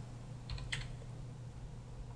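A few computer keyboard keystrokes, typing a search term, over a faint steady low hum.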